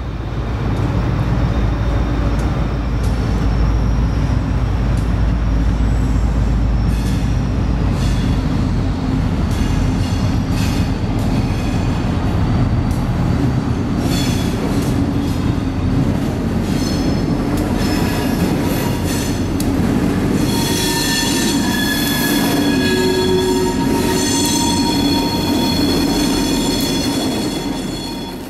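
Diesel locomotives rumble low as they pull a freight train of loaded autorack cars slowly through track switches, with the wheels clicking over the rail joints and frogs. About two-thirds of the way in, a high steady squeal of wheel flanges on the curve comes in and holds nearly to the end.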